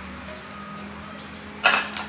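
A quiet, steady background hum. About a second and a half in comes a short, loud rustle as gloved hands handle an aglaonema cutting over loose soil.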